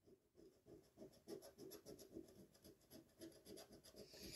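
Coin scratching the coating off a paper scratch-off lottery ticket in quick repeated strokes, faint.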